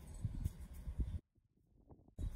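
Faint handling of a deck of playing cards being fanned out, a few soft knocks and slides over low wind rumble, then the sound drops out to near silence a little past halfway.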